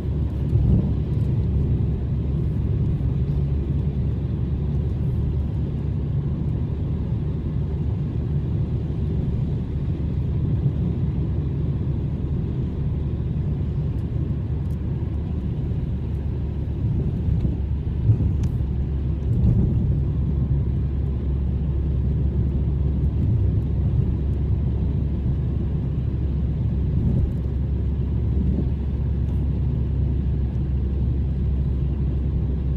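Steady low rumble of a car's engine and tyres on the road, heard from inside the cabin while driving, with an occasional faint knock.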